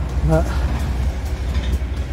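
A steady low rumble of wind buffeting the microphone outdoors.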